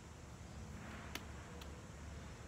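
Quiet outdoor background with a steady low hum, and two faint clicks a little past a second in, the second softer.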